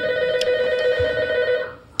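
Office desk telephone ringing: one long ring of steady, slightly warbling tones that cuts off shortly before the end.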